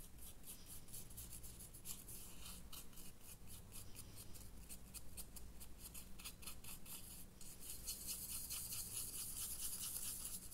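Stiff paintbrush bristles scrubbing back and forth over a miniature model's wall in a heavy dry brush: quick, repeated scratchy strokes, several a second, growing louder over the last few seconds.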